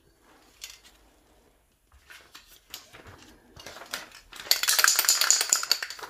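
Aerosol primer can spraying: a hissing burst of about a second and a half near the end, the loudest sound here. It comes after a few seconds of light, scattered clicks and clinks.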